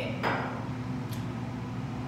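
A single knock of a small glass bottle being set down on a stone countertop, about a quarter second in, over a steady low room hum.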